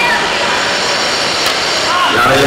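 Steady crowd noise from spectators at a cricket ground, with scattered distant voices and a single short click about one and a half seconds in.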